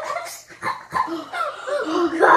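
A boy's wordless vocal sounds: a string of short cries with sliding pitch.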